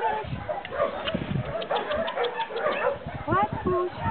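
A dog's barks and whimpers mixed with people talking.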